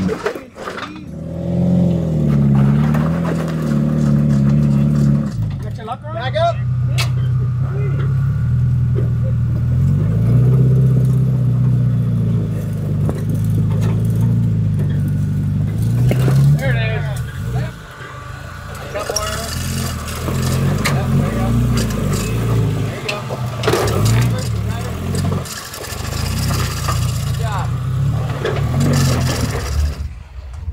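Off-road 4x4 engines running at low revs, the pitch stepping up and down as the vehicles crawl over boulders, with a few indistinct shouts.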